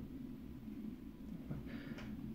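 Quiet room tone with a steady low hum, a faint tick about one and a half seconds in, and a faint breath-like hiss near the end.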